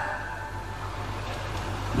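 A steady low hum under a faint, even hiss.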